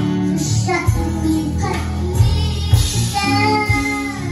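A young girl singing a song in phrases, accompanied by a keyboard and an electronic drum kit with a steady beat.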